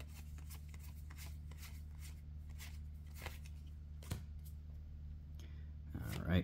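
Trading cards from a freshly opened booster pack being flipped through by hand, one card slid from the front of the stack to the back at a time, each move a short soft flick or rasp at an uneven pace, with two sharper clicks a little past the middle. A steady low hum runs underneath.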